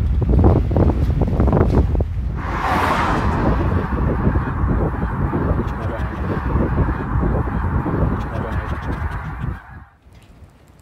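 Wind buffeting the microphone throughout. About two and a half seconds in, a large flock of geese starts honking in a dense, continuous chorus, which cuts off suddenly near the end.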